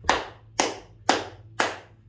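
Four evenly spaced hand claps, about two a second, keeping the beat of the lunar-phase waiata between the chanted phase names.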